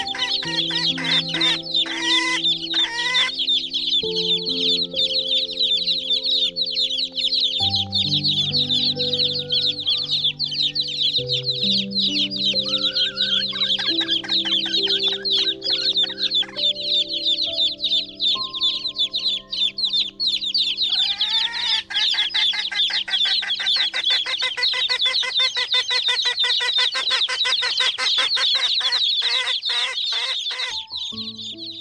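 A large flock of chickens calling continuously in a dense, busy chorus of rapid high-pitched calls, with a few longer arching calls. Soft background music of held notes plays underneath, changing every few seconds and fading out after about 24 seconds.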